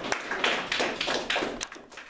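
A small group clapping: a short round of scattered claps that is fullest around the middle and thins out near the end.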